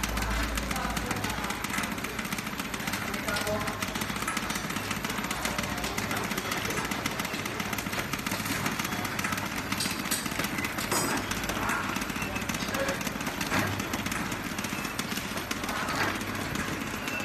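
Servo-driven horizontal flow-wrap packing machine running, a steady fast mechanical clatter as it feeds caster wheels along its conveyor and wraps them in PE film.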